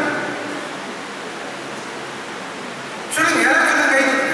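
A man's voice through a handheld microphone trailing off, then a steady hiss for about two and a half seconds, then his voice starting again loud near the end.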